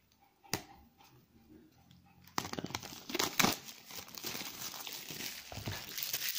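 Clear plastic wrapping crinkling as it is torn and pulled off a small notebook: a sharp snap about half a second in, then dense, continuous crackling from about two and a half seconds on.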